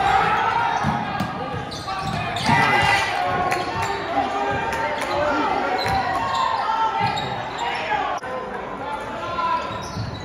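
Basketball game in a large gym: spectators and players calling out over one another, with a basketball bouncing on the hardwood court now and then.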